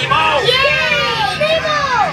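Children's high-pitched voices talking and calling out, several at once, over a steady low hum.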